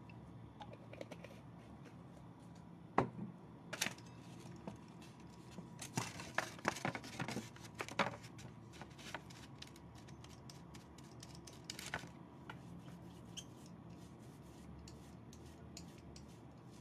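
A small paint roller and a paint tray being handled on a craft table: scattered clicks, taps and short crackles, with a sharp knock about three seconds in and a busier run of crackles and clicks around six to eight seconds.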